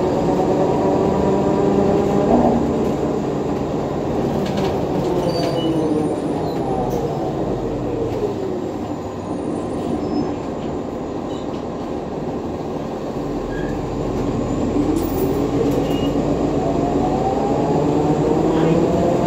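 Inside a NovaBus LFS hybrid bus with an Allison EP40 hybrid drive and Cummins ISL9 diesel: the drivetrain's whine falls in pitch as the bus slows through the first half, then rises again as it speeds up near the end, over a steady engine and road rumble.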